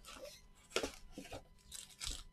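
Cardboard card box and foil-wrapped trading card packs being handled: a few short rustles, crinkles and light taps as packs are pulled from the box and set down on a playmat.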